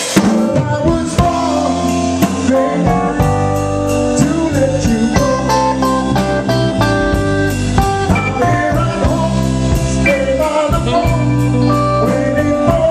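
Live blues band playing: electric bass, electric guitar and drum kit, with saxophone holding long notes over a steady cymbal beat.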